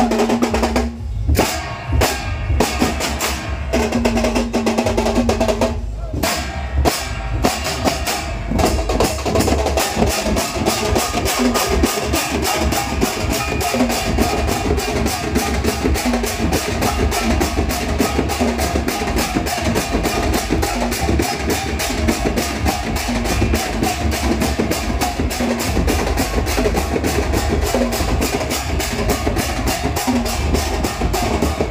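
Ghanta Badya ensemble: bell-metal gongs (ghanta) struck with sticks together with drums. The strokes come in groups with short breaks at first, then settle into fast, steady, continuous beating from about nine seconds in.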